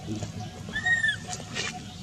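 Orphaned baby macaque crying from hunger: one short, high, arched squeal about a second in.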